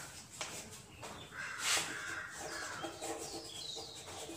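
Chalk scratching and tapping on a chalkboard as words are written, with a bird calling in the background.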